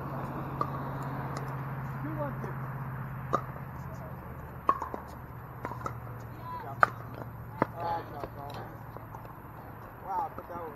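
Scattered sharp pops of pickleball paddles hitting the ball, about seven of them a second or so apart and loudest near the end, with people talking underneath and a steady low hum.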